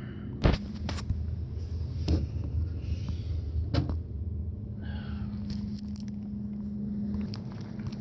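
Small condiment cups and packets handled in the hand, with a few sharp clicks and knocks, the loudest about half a second in, over a steady low hum.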